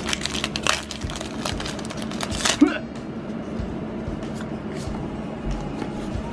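Foil booster-pack wrapper of Pokémon trading cards being torn open and crinkled by hand, a dense crackle for the first two and a half seconds that ends in one sharp, loud rip. After that come quieter, fainter rustles and clicks as the cards are handled.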